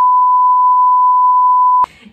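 A loud, steady 1 kHz test-tone beep, the reference tone that goes with television colour bars. It holds one unchanging pitch and cuts off suddenly just before the end.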